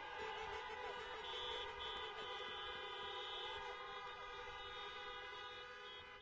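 Many car horns honking at once, long held tones at several pitches overlapping in a steady chorus: a drive-in rally crowd applauding with their horns.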